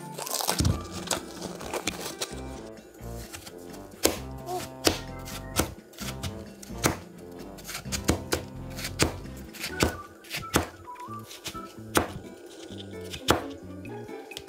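Background music with steady notes, over a large knife cutting through watermelon onto a plastic cutting board: a string of sharp knocks about a second apart in the second half. In the first second, plastic cling wrap crinkles as it is pulled off the fruit.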